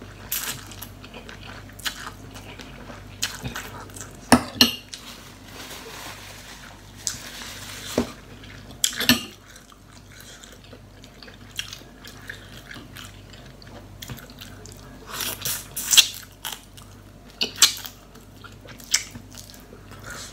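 Eating at a glass bowl of noodle soup: a metal spoon and fork clink now and then against the glass, between chewing and slurping of noodles.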